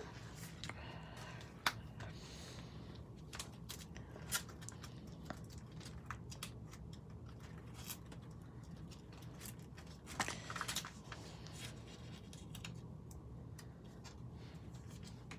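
Quiet, scattered clicks and plastic rustles of a sticker storage album's clear sleeves being turned and handled, with a brief denser flurry about ten seconds in.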